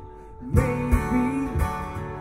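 Acoustic guitar played live, strummed chords. It is softer for the first half second, then the strumming comes back in with regular strokes.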